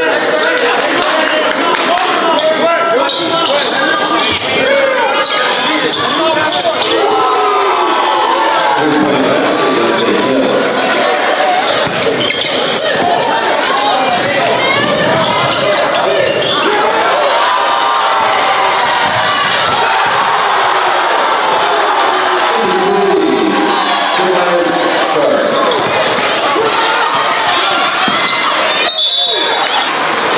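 A basketball bouncing on a hardwood gym floor under a steady hubbub of many voices and crowd chatter echoing in the gymnasium.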